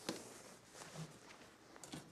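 Faint handling noise: a short click at the start, then quiet rustling as the drawstring is pulled out of the old ironing board cover's bias-tape casing.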